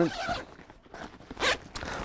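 Zipper on the main compartment of a Babolat Y-Line racquet bag being pulled open in two short runs, one at the start and another about a second and a half in.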